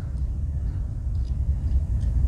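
Steady low rumble of room background noise, with no distinct clicks or knocks.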